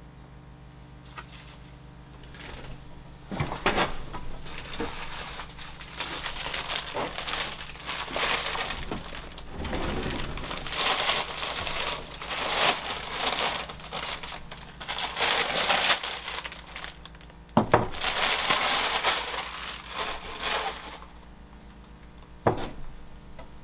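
Plastic bag crinkling and rustling on and off as a block of clay is pulled out of it. There is a sharp knock about three seconds in and another near the end.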